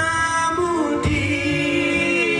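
Men singing a slow song into handheld microphones, with long held notes that slide from one pitch to the next.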